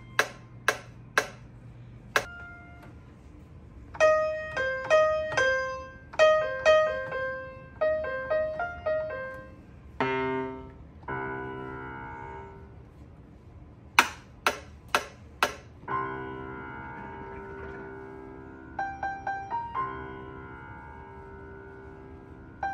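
Beat sounds being played back in music production software: a quick run of four sharp drum hits, a short piano-like keyboard melody, then held keyboard chords. The four drum hits come again about two-thirds through, followed by more held chords with a quick run of repeated notes.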